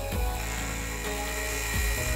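Scroll saw running steadily as its fine metal-cutting blade works slowly through 5 mm tool steel, under soft background music.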